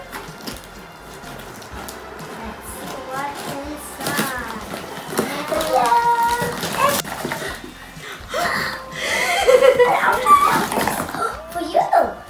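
Young children's voices talking and exclaiming in short bursts, with rustling of packaging and a single sharp click about seven seconds in as a present box is opened.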